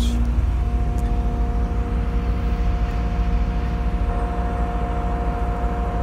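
Mobile crane's diesel engine running under hydraulic load as the telescopic boom retracts: a steady low rumble, with a steady two-note hydraulic whine that settles in about half a second in.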